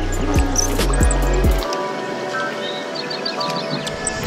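Background music of sustained, held tones; its low bass part drops out about a second and a half in.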